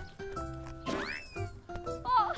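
Light background music with sustained notes, and about a second in a short high-pitched sound that rises and then falls in pitch.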